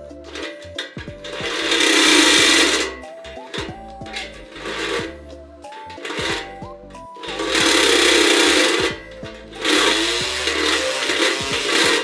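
Cordless drill running in three bursts of a second and a half to two seconds each, drilling into a metal bracket on a motorcycle frame.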